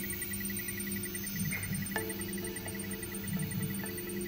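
Epitum JL FDM 3D printer running a print: a steady mechanical hum and whine whose pitch shifts about halfway through, with a few faint ticks.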